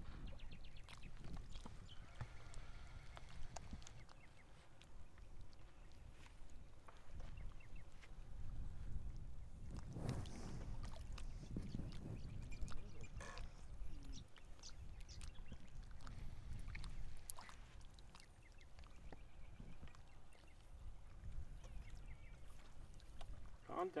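Faint, distant voices over a low, uneven rumbling background, with clearer speech right at the end.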